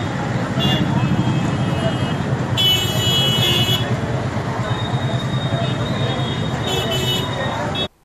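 A crowd talking over one another amid street noise, with vehicle horns sounding several times: short toots near the start and near the end, and one longer, louder honk of about a second near the middle. The sound cuts off abruptly just before the end.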